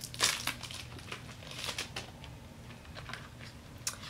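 A small cardboard box of Morinaga Milk Caramel candies being opened by hand: crinkling and rustling of paper and card in short spells, loudest about a quarter second in and again near two seconds.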